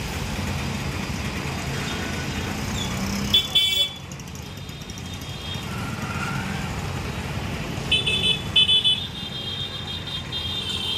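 Busy street traffic running steadily, with a vehicle horn giving one short honk about a third of the way in and a quick series of short beeps near the end.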